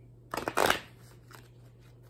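A tarot deck handled and shuffled by hand: a short burst of card noise about half a second in, loudest near its end, followed by a couple of faint flicks.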